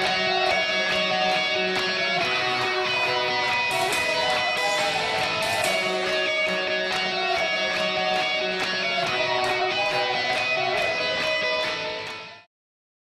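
Guitar-driven music with strummed electric guitar over a steady beat.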